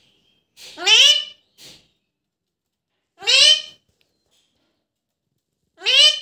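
Alexandrine parakeet calling: three loud, high-pitched calls, each about half a second long and rising in pitch. They come about a second in, in the middle, and at the very end.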